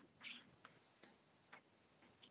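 Near silence: quiet room tone with a few faint ticks.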